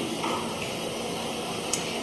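Steady hiss of room noise on a grainy phone recording, with a faint click near the end.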